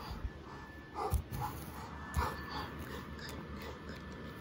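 Short, broken animal-like vocal noises, the kind made to voice a toy monster feeding, mixed with a few soft low thumps from toys and the camera being handled. The two loudest thumps come at about one second and two seconds in.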